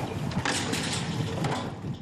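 Knocks and clatter of heavy fireworks mortar tubes being handled and set into a steel rack, over a steady rushing outdoor noise.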